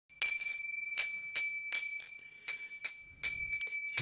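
Small brass hand cymbals (kartals) struck in an uneven repeating kirtan rhythm, about two strokes a second, each stroke ringing on with a bright high tone.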